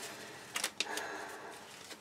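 Gloved hands pulling rubber bands off a dye-soaked shirt: faint rustling, with a few short snaps of the bands a little over half a second in.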